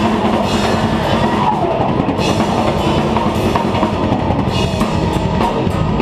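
A live heavy metal band playing at full volume, heard from close to the drum kit: drums and cymbals lead the mix in a fast, dense beat, over guitar.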